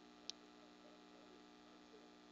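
Near silence: a faint steady electrical hum, with a single short click about a third of a second in.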